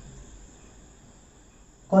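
A pause in a man's speech: faint background noise with a thin, steady high-pitched tone, and his voice coming back in at the very end.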